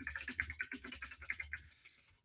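Fast typing on a computer keyboard: a quick run of light key clicks, about eight to ten a second, that stops shortly before the end.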